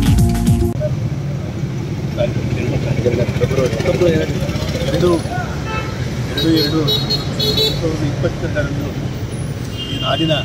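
Background music cuts off less than a second in, giving way to outdoor street noise: a steady traffic rumble with people talking in the background and a few short high-pitched chirps.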